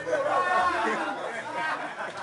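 Several people talking over one another: loud, indistinct group chatter with no clear words.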